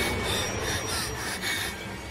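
A rhythmic rasping, scraping sound effect, about three strokes a second, slowly fading.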